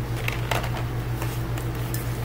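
Cardboard candy boxes being handled, giving a few short, light taps and rustles over a steady low hum.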